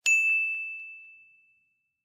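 A single bell ding sound effect: one sharp strike that rings on as a clear high tone and fades away over about a second and a half.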